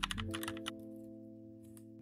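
Computer keyboard keystrokes, a quick run of clicks typing out a command, stopping within the first second. Under them, soft background music holds a steady chord that grows quieter toward the end.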